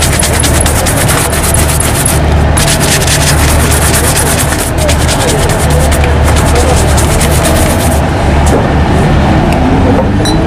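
Fast, repeated strokes of a shoe brush on a black leather shoe, stopping near the end, over a steady low traffic hum.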